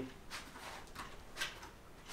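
Faint, brief rubbing and squeaks of a red push-on hose fitting being pressed down tightly onto the plastic extractor container's outlet port, with one slightly louder scrape about one and a half seconds in.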